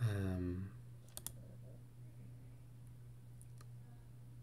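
A short murmured vocal sound falling in pitch, then two sharp computer clicks about a second in and a couple of fainter clicks later, as the selection moves to a new crossword clue. A steady low hum runs underneath.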